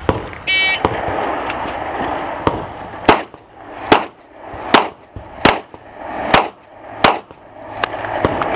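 Electronic shot timer's high start beep about half a second in, then six shots from a 9 mm FN FNP-9 pistol, the first about two and a half seconds after the beep and the rest roughly one every three-quarters of a second.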